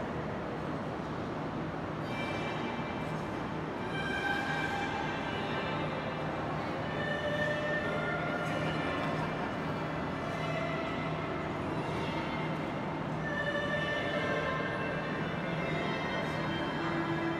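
Slow melodic music begins about two seconds in, over the steady rumbling hum of an indoor ice rink.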